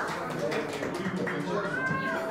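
People's voices, with one high, drawn-out vocal sound near the end that rises and then falls in pitch.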